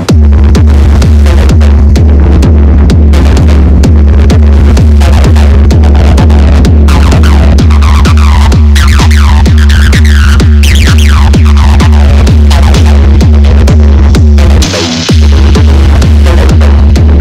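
Techno track: a steady four-on-the-floor kick drum over a heavy, sustained bassline that comes in right at the start. Falling synth sweeps run through the middle, and near the end the bass cuts out for about half a second under a rush of noise before the beat returns.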